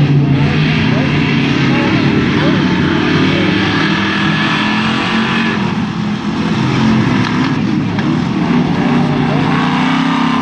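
A pack of pure stock dirt-track race cars running at racing speed, several engines sounding at once, their notes rising and falling as the cars pass through the turns.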